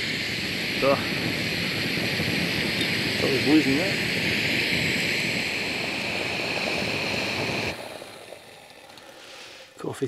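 Canister gas stove burning with a steady hiss, which stops suddenly about eight seconds in.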